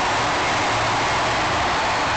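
Diesel engines of Caterpillar wheel loaders running as they work around a flipped monster truck, under a loud, steady stadium din.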